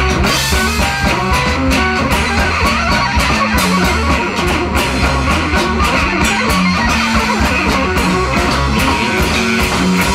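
Live noise-rock band playing an instrumental passage: electric guitar over a drum kit, with steady, closely spaced drum hits and a heavy low end.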